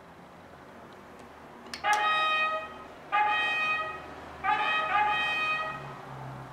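Bally Wulff TexMex slot machine playing a brass-like electronic fanfare: a click about two seconds in, then four loud held notes, the last two back to back.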